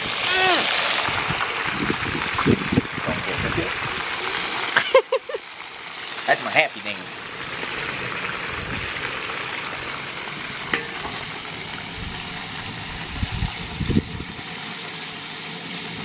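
Oil sizzling steadily as whole tilapia deep-fry in a disco (cowboy wok). The sizzle drops to a softer level about five seconds in. Short voice sounds break in near the start and around five to seven seconds.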